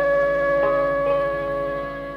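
Instrumental intro of a Bengali song: a flute holds one long steady note over a low pulsing accompaniment, fading away near the end.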